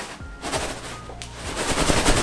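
A pillow filled with small hard grains, which he takes for barley or beans, squeezed and shaken in the hands close to the microphone. The filling shifts with a soft rustle that builds into a dense, rapid crackling rattle in the second half.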